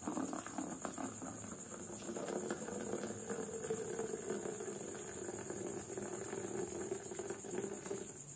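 Water poured in a thin stream into a ceramic mug, splashing and gurgling, stopping just as the pour ends. A steady high cricket trill runs behind it.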